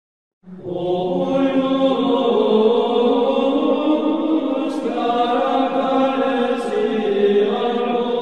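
Slow chanted vocal music with long held notes that change pitch only gradually, starting about half a second in.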